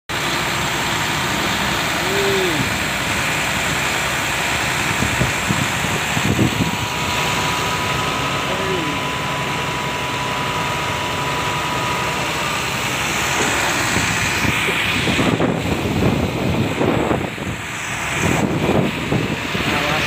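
A large truck's engine running steadily close by, under a continuous rushing noise.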